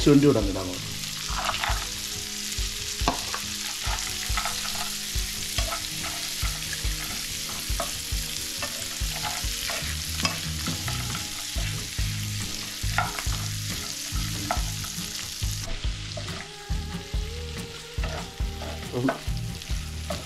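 Chopped onions, cashews and chillies sizzling as they fry in a nonstick frying pan, with a steady hiss throughout. A wooden spatula scrapes and taps against the pan in frequent short strokes as they are stirred.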